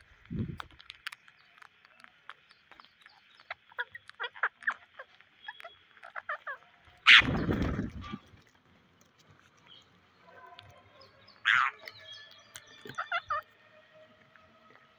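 Rose-ringed parakeets and a house crow pecking rice grains off concrete: scattered sharp pecking clicks, then a loud flurry of flapping wings about seven seconds in as a parakeet takes off close by. A short bird call rings out near the end.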